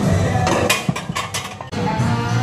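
A quick run of sharp metallic clinks and clanks from a loaded barbell and its iron plates knocking against the bench-press rack, over background music that dips briefly and comes back near the end.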